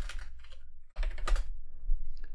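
Typing on a computer keyboard: a quick run of key clicks with a brief pause about a second in.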